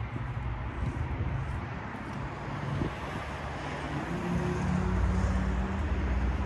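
An engine running steadily at idle, a low drone with outdoor noise over it, growing a little louder and fuller about four seconds in.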